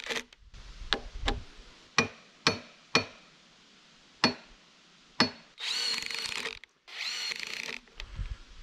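Cordless drill driving screws in two short runs of a high whine near the end, fixing a steel mill bracket into a log end. Before that, a series of separate sharp clicks and taps, about seven, some with a short ring.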